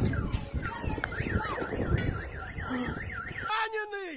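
A car alarm warbling rapidly up and down, about four times a second, for about two seconds, most likely set off by the blast just before. It sits over heavy rumbling noise, and a person's voice calls out near the end.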